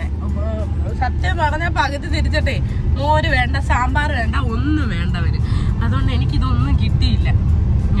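Steady low rumble of a moving car heard from inside the cabin, under a woman talking.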